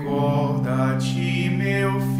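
A single voice chanting a line of liturgical text over a steady, sustained musical drone. The chanted pitch moves in short steps, with sibilant consonants about a second in and near the end.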